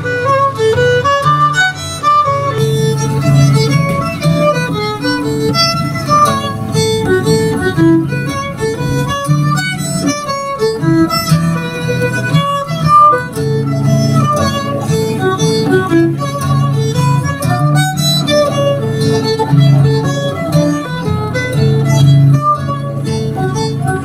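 Fiddle playing an Irish tune, a melody of quickly changing notes, over acoustic guitar chords played in a steady rhythm.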